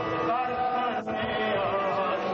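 Sikh devotional chanting (gurbani kirtan): a voice sings long, gently wavering held notes. There is a brief dropout about a second in.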